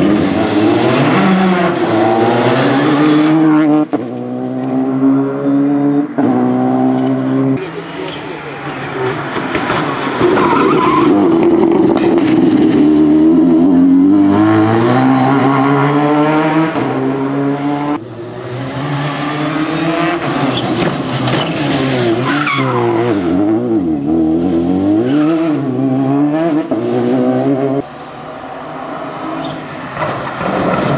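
Citroën DS3 rally car's engine revving hard as it drives the stage, its pitch climbing and dropping sharply with quick gear changes, over several passes.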